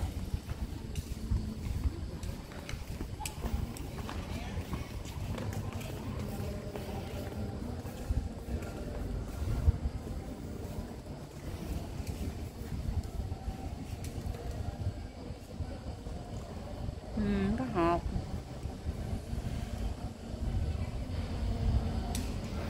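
Low rumbling noise from a handheld phone microphone being carried around, with scattered small knocks and a short voice about seventeen seconds in.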